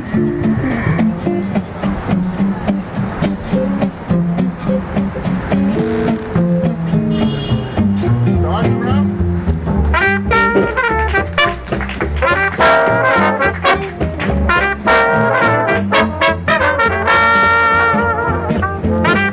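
Live small-group swing jazz: a plucked string bass solo over acoustic guitar rhythm. About ten seconds in, a section of trumpets and trombones comes in together, playing an ensemble chorus in harmony.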